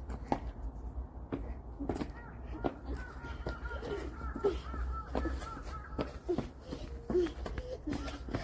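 Young children's short wordless vocal sounds and little exclamations while playing, with light footsteps on asphalt and a steady low rumble.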